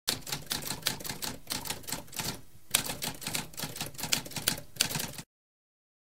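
Typewriter typing: a fast run of keystrokes with a brief lull about halfway through, then more keystrokes that stop abruptly a little after five seconds.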